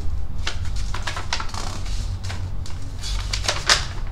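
A sheet of paper being unfolded and handled: crisp rustles and crinkles in irregular bursts, loudest about three and a half seconds in, over a steady low hum.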